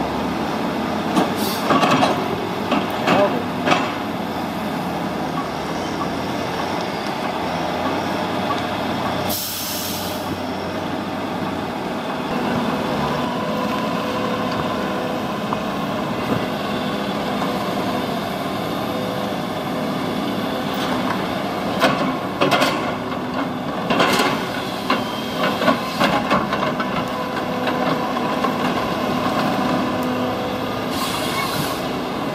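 Log loader's diesel engine running steadily under load as its grapple handles logs, with clusters of knocks from logs striking each other near the start and again about two-thirds of the way in. A short sharp hiss comes about a third of the way in.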